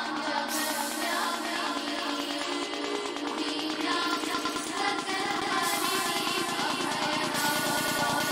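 Electronic psychedelic trance music from a live DJ set. A melodic passage of layered pitched lines runs over fast ticking percussion, and the mix grows fuller in the second half.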